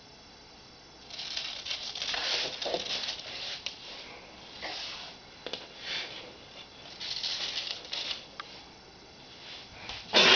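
Irregular rustling and scraping in short bursts, with a few sharp clicks, starting about a second in.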